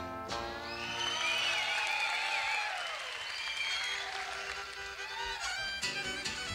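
Live country band with fiddle playing as a song closes, over audience applause; the band comes back in near the end.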